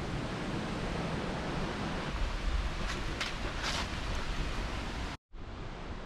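Wind noise on the microphone outdoors: a steady rushing hiss with a low rumble and a few faint rustles. It cuts out for an instant about five seconds in, then resumes.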